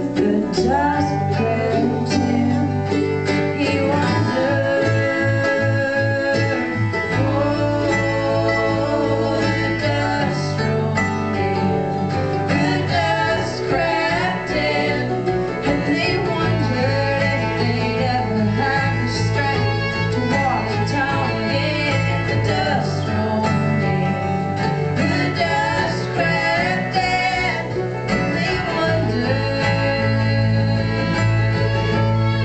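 Bluegrass string band playing an instrumental break live: strummed acoustic guitar and electric bass under a continuous melodic lead on other string instruments.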